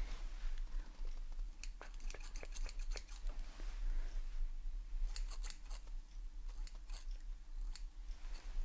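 Toothed hair-thinning shears snipping close to the microphone. The snips come in quick runs of several at a time: a run of about a dozen from about one and a half to three seconds in, another short run around five seconds, a few near seven seconds, and a single snip near the end.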